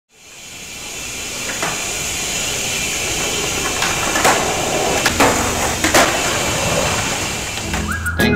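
Skateboards on concrete heard through a phone microphone: a steady rolling hiss that fades in at the start, broken by a few sharp clacks of boards popping and striking the ground, the loudest three coming between about four and six seconds in.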